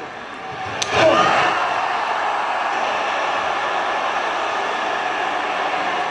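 A single sharp slap played over the arena speakers about a second in, with echo. At once an arena crowd reacts loudly, and the noise holds steady.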